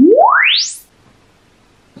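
A DIY planar-magnetic midrange driver in a test baffle playing a measurement sine sweep. It is one clean tone gliding quickly and evenly upward from deep bass to a very high pitch in under a second, played to measure the driver's distortion.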